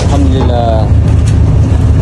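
Fishing boat's engine running with a steady low rumble, with a brief voice about a quarter second in.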